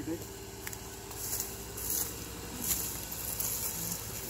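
A four-wheel-drive's engine running steadily at low revs, with short bursts of crackling hiss in the middle.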